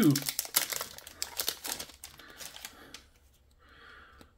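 Magic: The Gathering collector booster pack wrapper being torn open and crinkled by hand: a rapid run of crackles for about two seconds, then a few soft rustles as the cards come out.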